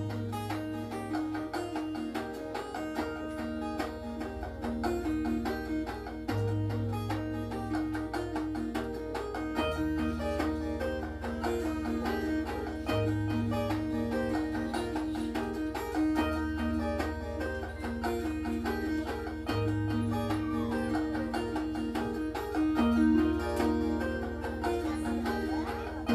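Steel-string acoustic guitar playing a steady, rhythmic chord pattern, with the chord and bass note changing about every three seconds.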